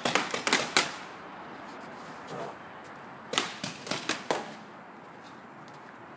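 Paintball markers firing: a quick string of about half a dozen sharp shots at the start and a second string of about five about three seconds later.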